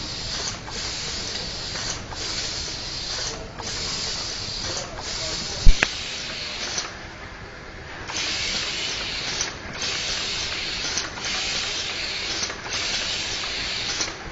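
Steady compressed-air hiss on a delta pick-and-place robot's pneumatic vacuum grippers, breaking off briefly about every second and a half as the grippers pick and release. A single sharp knock a little before the middle is the loudest sound.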